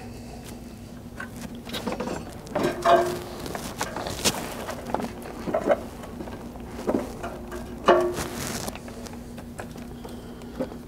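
Vehicle wiring being pulled through a rubber grommet and handled against plastic trim: scattered rustles and scrapes, with a few short squeaks, as the slack is pulled out.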